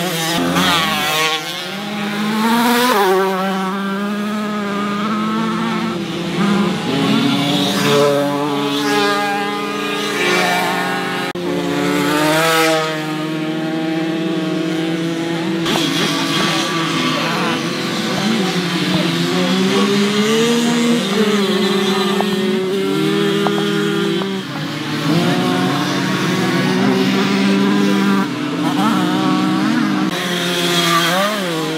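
Several small two-stroke moped engines revving as the bikes race round a dirt track. Their overlapping pitches keep rising and falling with each throttle change.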